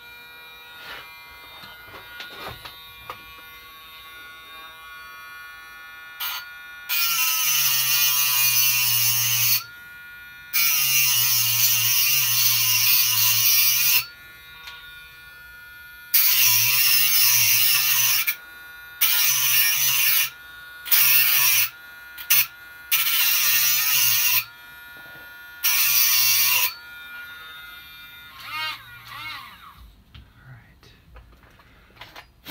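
Dremel rotary tool with a cutoff wheel grinding the edges of a key blank clamped in a vise, in about eight bursts of one to three seconds each as the spinning wheel is pressed to the metal and lifted off. Between the cuts the tool keeps running with a quieter steady whine.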